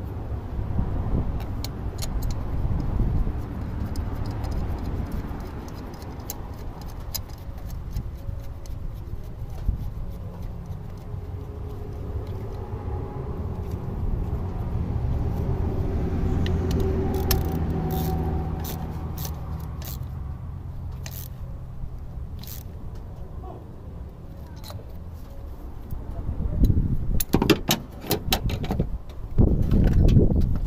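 Metal hand tools clicking and clattering on the engine top as ignition coils and spark plugs are removed, with a dense burst of clatter near the end. Behind it, a steady low vehicle rumble swells and fades in the middle.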